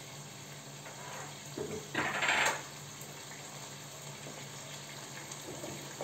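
A kitchen tap runs briefly about two seconds in, over a faint steady hiss and a low hum.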